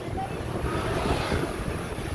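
Wind buffeting the microphone, with the steady hum of tyres on pavement from a road bicycle riding at speed.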